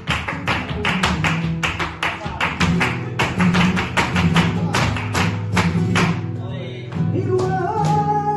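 Live flamenco music: a rapid run of sharp percussive strikes over guitar. The strikes stop about seven seconds in, and a singing voice comes in.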